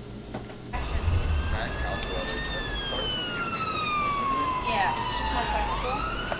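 Emergency vehicle siren wailing in a slow rise and fall of pitch, starting abruptly about a second in and beginning to rise again near the end, over a low rumble.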